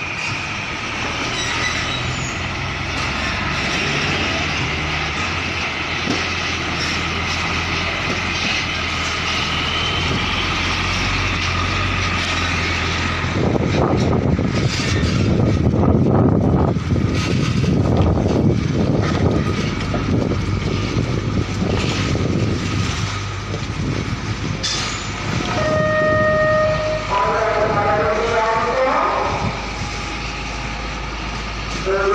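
Diesel engines of tractor-trailer container trucks running as they manoeuvre at low speed. About halfway through, the sound grows louder and rougher as a trailer passes close by. Near the end a short steady tone sounds.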